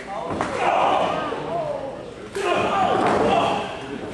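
A wrestler's body slamming onto the ring mat twice, about half a second in and again just past two seconds. Each slam is followed by spectators yelling in the echoing hall.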